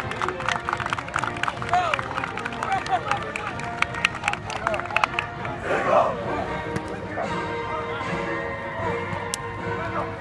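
Outdoor sports-field ambience: scattered distant voices with background music, and many short sharp clicks through the first half.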